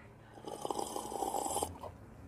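A person slurping a sip of coffee from a paper cup: a crackly slurp of air and liquid through the lips lasting just over a second, which stops abruptly near the end.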